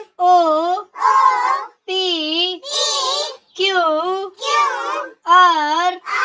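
A child's voice chanting letters of the alphabet one by one, unaccompanied, in a sing-song tone. There are seven syllables, about one every 0.8 s, each dipping and rising in pitch.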